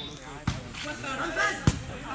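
Two sharp smacks of a volleyball being hit, about half a second in and again near the end, over the background chatter of spectators.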